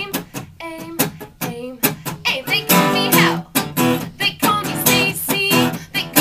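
Acoustic guitar strummed in a steady rhythm while a woman sings a pop melody into a microphone, performed live and unplugged.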